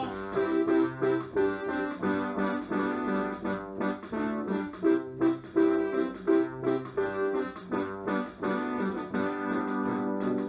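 Instrumental break of a children's song: an electronic keyboard plays chords to a steady beat, with no singing.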